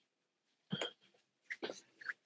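A man's few short vocal noises over a video call: one brief burst about two-thirds of a second in and a couple of quicker, fainter ones near the end, with near silence between.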